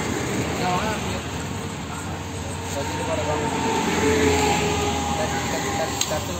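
Roadside background noise with faint voices, swelling to its loudest about four seconds in as a vehicle passes on the road.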